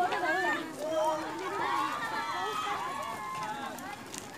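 Several people talking over one another outdoors: indistinct group chatter with no single clear voice.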